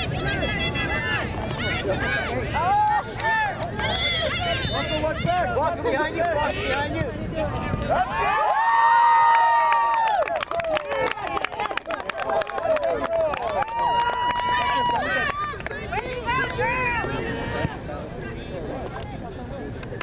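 Soccer spectators and players shouting and calling out, many overlapping voices, with one loud drawn-out shout about nine seconds in and another long held call a few seconds later.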